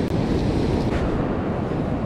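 Surf breaking and washing up the beach, with wind buffeting the microphone in a steady rush.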